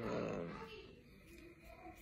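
A man's wordless vocal sounds, strongest in the first half second and then trailing off to fainter voiced noises.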